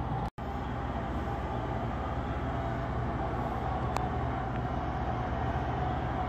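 Steady low background rumble of indoor room noise, broken by a split-second dropout just after the start and a faint click about four seconds in.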